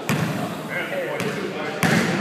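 A basketball bouncing on a hardwood gym floor, three sharp thuds, with echo in the hall.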